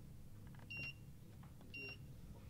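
Snack vending machine keypad beeping as its buttons are pressed: two short, high electronic beeps about a second apart.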